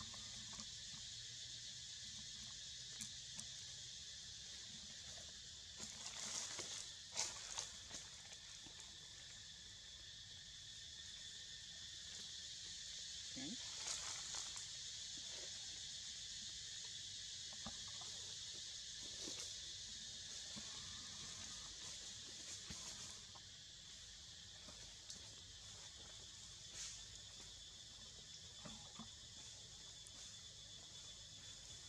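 A steady, high-pitched insect chorus, with scattered soft rustles and clicks that cluster about a quarter of the way through and again near the middle.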